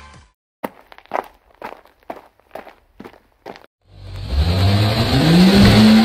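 Footsteps, about eight in three and a half seconds, then a car engine starts up and revs, rising in pitch and loudness before levelling off.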